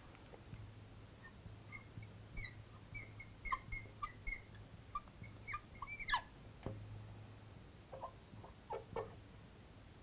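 Marker pen squeaking on a glass lightboard while a word is written: a string of short, faint high squeaks from about two seconds in to six seconds, then a few more around eight to nine seconds.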